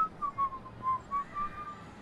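A whistled tune: about eight short clear notes in quick succession, dipping slightly in pitch and then levelling off.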